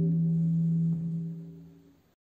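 The final sustained chord of a musical-theatre backing track, held steady for about a second and then fading out.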